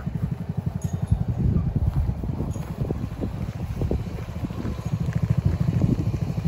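The 149cc air-cooled four-stroke engine of a Hammerhead GTS 150 go-kart idling, a steady rapid low putter.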